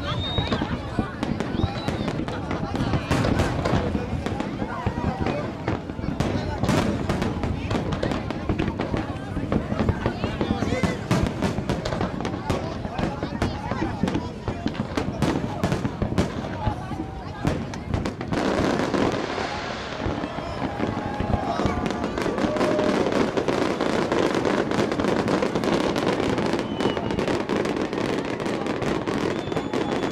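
Fireworks display: aerial shells bursting in a continuous, rapid barrage of bangs and crackles.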